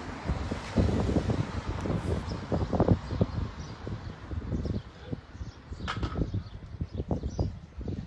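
Wind buffeting a handheld phone's microphone: an irregular low rumble in uneven gusts.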